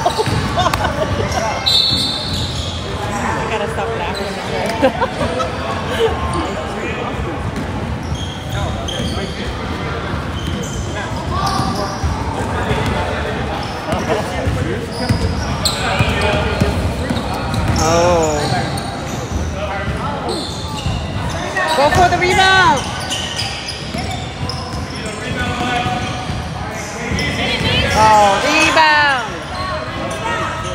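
Basketball dribbled and bounced on a hardwood gym floor, with voices calling out across the echoing gym.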